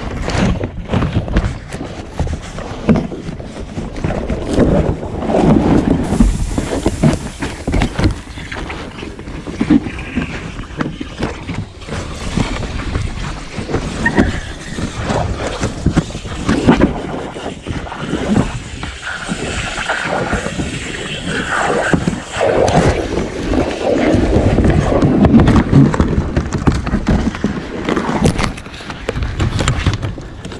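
Irregular knocks, thumps and scraping against the rubber tube of an inflatable boat as a netted bluefin tuna is wrestled alongside.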